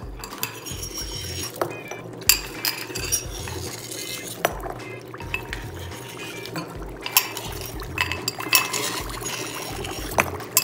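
A metal spoon clinking irregularly against glass bowls as dry ice is dropped in, over the steady bubbling of dry ice in water.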